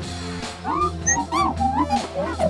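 Astromech droid replica's speaker playing a string of short electronic chirps and whistles that glide up and down in pitch, starting about half a second in, over a steady background music bed.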